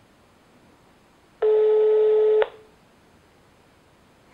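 Telephone ringback tone on an outgoing call: a single steady beep lasting about a second, heard halfway through, signalling that the called phone is ringing at the other end.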